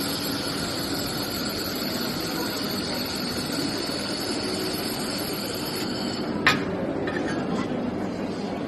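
Handheld fiber laser welder running a weld along a sheet-metal corner seam: a steady, even machine noise with a faint high whine. A single sharp click comes about six and a half seconds in.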